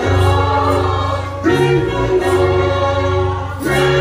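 Gospel choir singing with instrumental backing and a steady bass, the voices holding long notes that change about a second and a half in and again near the end.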